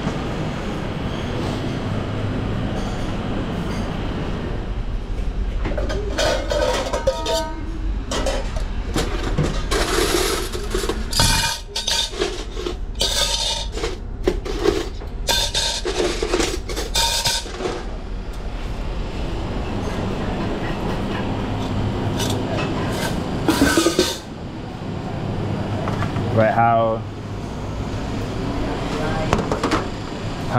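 Commercial kitchen: a steady ventilation hum, with a run of metal clatters from steel utensils and trays being handled in the middle, and voices in the background.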